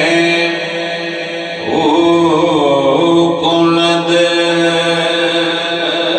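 A man chanting into a microphone in melodic devotional recitation, holding long notes. A new phrase begins about a second and a half in, sweeping up in pitch.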